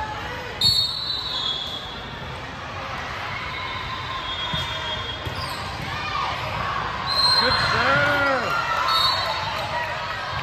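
Indoor volleyball rally: a sharp ball strike about half a second in, then sneakers squeaking on the hardwood court and players calling out, busiest and loudest between about seven and nine seconds, in a large echoing gym.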